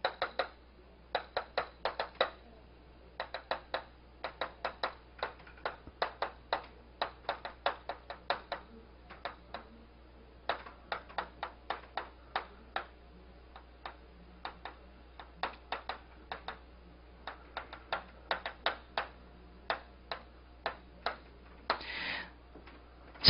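Chalk writing on a blackboard: clusters of short, sharp taps and scratches, several a second, with brief pauses between groups of strokes.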